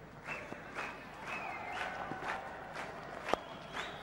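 Faint stadium crowd background with scattered distant calls, then a single sharp crack of a cricket bat striking the ball about three seconds in.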